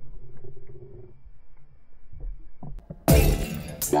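Muffled underwater sound through a camera housing with a few faint clicks, then, about three seconds in, loud music cuts in abruptly with a crash.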